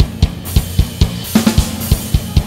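A BFD3 virtual acoustic drum kit playing a steady groove of kick, snare and hi-hat, with cymbal crashes ringing about half a second in and again after a second. A hard hit falls right at the start.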